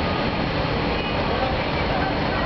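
Steady din of idling truck engines, with indistinct voices mixed in.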